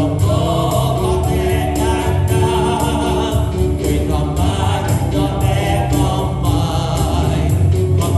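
Church praise team of mixed men's and women's voices singing a hymn into microphones, with electronic keyboard accompaniment and a steady bass. The notes are held and slow, as in a hymn refrain.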